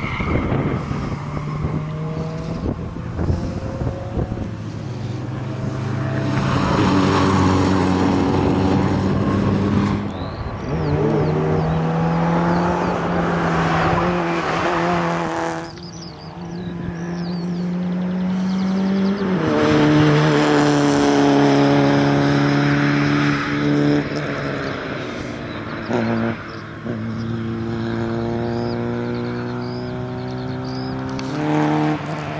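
Peugeot 106 XSi four-cylinder petrol engine revved hard as the car is driven through a cone course. The engine note climbs and drops repeatedly as the driver accelerates, shifts and lifts, with a sharp lift about sixteen seconds in. Tyres squeal at times in the turns.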